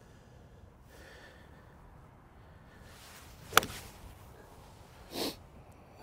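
A 52-degree golf wedge striking the ball once about three and a half seconds in, a single sharp click, on a pitch shot of about 98 yards. A short exhale follows a couple of seconds later.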